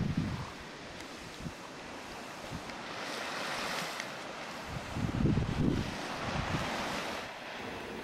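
Small surf washing onto a sandy beach, with wind buffeting the microphone. About five seconds in, a brief low sound rises above the steady wash.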